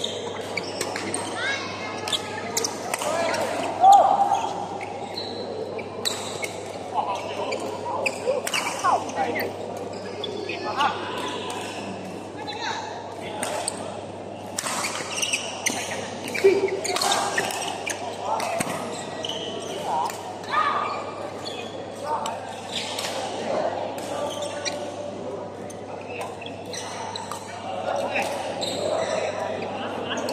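Badminton rally in a large, echoing hall: repeated sharp racket strikes on the shuttlecock and footwork on the court, at an irregular pace, the loudest hit about four seconds in.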